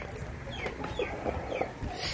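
Birds calling: short, falling chirps, about three a second.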